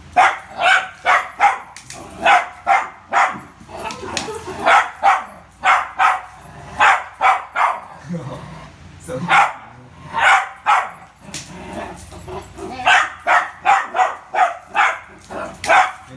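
A small poodle barking in quick runs of short, sharp barks, several a second, with brief pauses between runs and a longer gap about halfway through. It is play barking at a balloon it is chasing.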